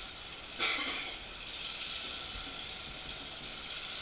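Steady hiss of room tone through the microphone, with one short rustle a little over half a second in.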